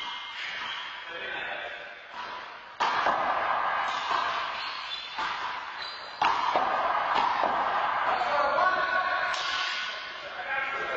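Voices echoing in a large hall, with two sudden bangs, one about three seconds in and one about six seconds in. Each bang is followed by a longer stretch of louder noise.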